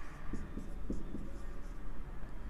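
Marker pen writing on a whiteboard: a series of short, separate scratchy strokes as words are handwritten.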